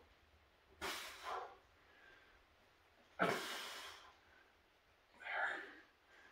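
A man breathing hard from exertion while straining against a towel: a sharp exhale about a second in, a louder, longer breath out a little past the middle that carries a breathy "There", and another breath near the end.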